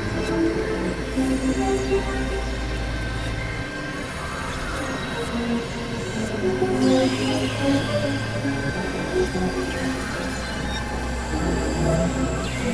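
Experimental electronic synthesizer music from a Novation Supernova II and a Korg microKorg XL: layered steady drones and tones. A deep low drone drops out a few seconds in and comes back twice, and a falling sweep sounds about seven seconds in.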